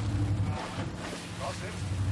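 Sportfishing boat's engine running with a steady low drone, under a few short spoken words.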